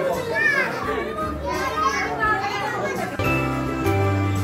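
Overlapping chatter and calls of children and adults, with high-pitched child voices. About three seconds in, music with a strong bass line starts abruptly.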